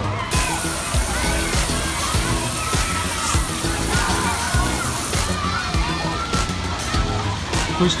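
A splash-pad water jet spraying onto the deck, a steady hiss for the first five seconds or so, over background music.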